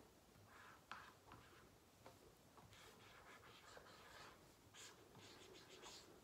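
Whiteboard marker drawing an arrow on a whiteboard: faint, short scratching strokes of the felt tip on the board.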